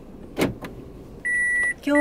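A sharp click about half a second in, then near the end a car's in-cabin reverse warning beeper starts: a steady high beep about half a second long, and a second one starting straight after.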